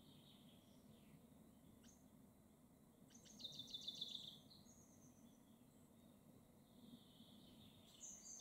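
Near silence with faint distant birdsong: a single high chirp about two seconds in, then a short, rapid trill of high chirps lasting about a second, starting around three seconds in.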